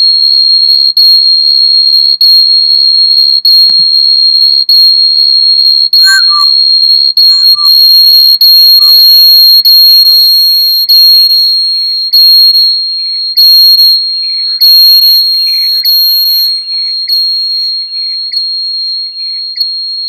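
Audio feedback howl: a microphone picking up its own loudspeaker, holding one loud, steady high-pitched whistle with echoes pulsing through it about once a second. The howl thickens in the middle and grows quieter over the last several seconds.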